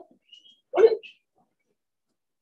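A single short, sharp spoken "What?" about a second in; the rest is dead silence.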